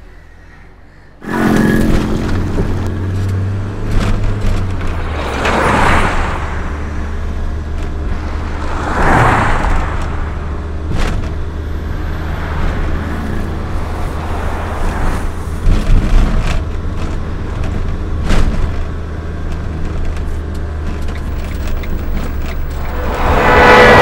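A car being driven, heard from inside the cabin: a steady low engine and road hum, with vehicles whooshing past about six and nine seconds in. Near the end a loud rise with several held tones sets in.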